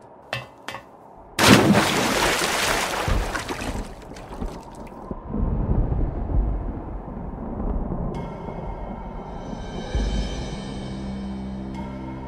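A loud splash of a body plunging into water, starting about a second and a half in and dying away over a couple of seconds into a low underwater rumble. Ominous music rises near the end.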